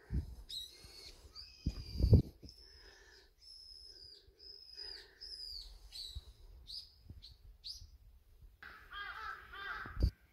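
Birds calling: a long series of short, high whistled notes, some slurring down and some rising, then a rapid, harsher chattering run of calls near the end. A couple of low thumps come early, the loudest about two seconds in.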